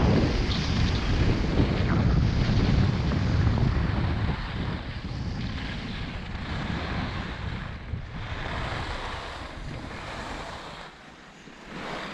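Wind rushing over a GoPro's microphone with the hiss of skis on groomed snow during a downhill run, loud at first and dying away over the last few seconds as the skier slows.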